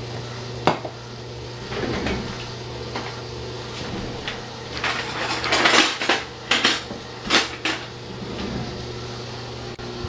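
Dishes and cutlery clinking and clattering, with a single click a little under a second in and a cluster of sharp clinks about five to eight seconds in, over a steady low hum.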